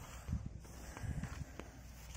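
Footsteps on dry dirt ground: a few soft, irregular low thuds.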